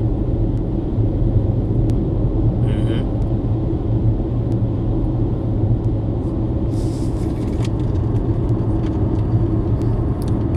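Steady low rumble of road and engine noise, as heard inside a moving car, with two brief faint noises about three and seven seconds in.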